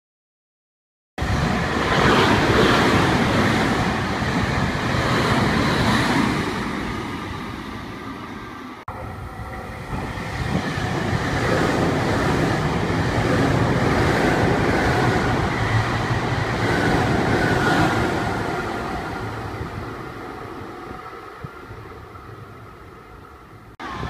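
Nankai Railway electric trains running through stations: the sound of a train on the rails, loud and then fading away. After a break it returns as a second train passes, holds steady, then fades out again.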